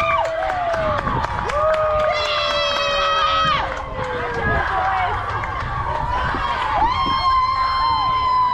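Children cheering and shouting in long, held yells, several voices overlapping, with scattered claps.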